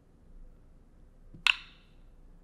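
A single short, bright click with a brief ringing tail about one and a half seconds in: the block-connect sound of the Blockly code editor as a dragged block snaps into place in the stack.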